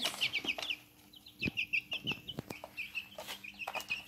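Two-week-old chicks peeping, many short falling chirps overlapping several times a second, with a brief lull about a second in. A few sharp taps of chicks pecking at a plastic feeder tray.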